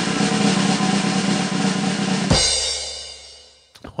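Snare drum roll that ends a little over two seconds in with a single crash hit, which rings and fades away.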